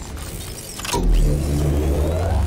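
Sound effects of an animated robotic scorpion mech: a deep mechanical rumble with a whirring of servos, coming in about a second in.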